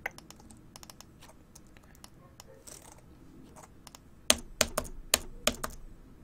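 Computer keyboard clicks: a few faint scattered key taps, then a quick run of about six louder clicks near the end.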